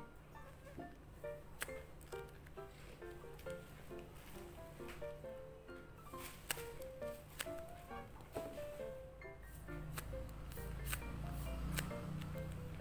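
Background music, a melody of short separate notes over a steady low layer, with faint crinkles and taps of paper squishies being handled.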